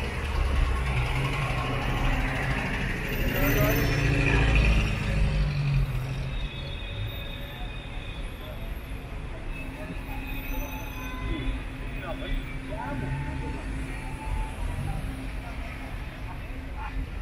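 Street ambience of slow car traffic: engines of cars running close by, loudest in the first six seconds, then easing into a quieter background of traffic and people's voices.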